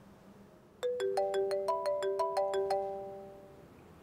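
Mobile phone ringtone: a short melody of about a dozen bell-like notes at several pitches, starting about a second in. The notes overlap as they ring on, then fade out.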